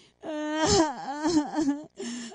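A woman's voice giving a wailing, crying-like vocal performance as part of a sound-poetry reading. The pitch wavers and swoops down and back up several times.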